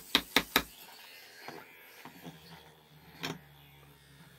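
Duncan Wizzzer spinning top being revved with quick strokes against a board, four sharp strokes in the first second. It is then let go and spins with a faint low steady hum, with a single knock about three seconds in.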